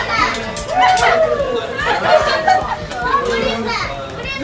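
A group of people laughing loudly with excited, overlapping high-pitched voices.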